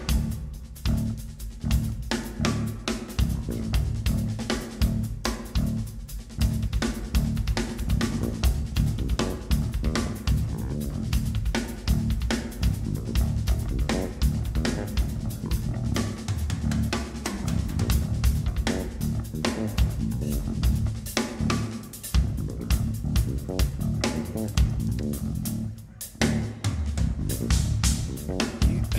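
Acoustic drum kit played live at high speed: dense patterns of kick drum, snare with rimshots, and cymbals, with a brief drop-out about two seconds before the end before the playing picks up again.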